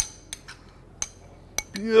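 Metal spoon clinking against a small glass bowl while stirring a rosemary, garlic and olive oil mix. Several light, sharp clinks spread over two seconds, the first the loudest.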